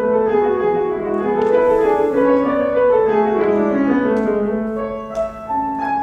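Piano playing a slow prelude: melody notes over held chords, with a phrase stepping down in pitch through the middle.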